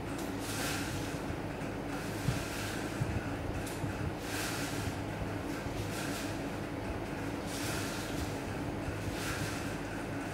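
Four strands of thin jute twine swishing over the paper surface of a Maltese firework shell as they are wrapped around it by hand, about one swish every one and a half to two seconds, over a steady low hum.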